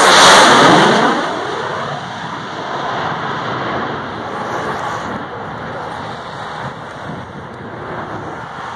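Boeing F/A-18 Hornet jet passing low overhead: loudest in the first second, then its rushing jet noise fades gradually as it moves away.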